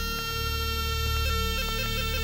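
Background music: sustained held notes over a steady low drone, with a few short notes changing along the way.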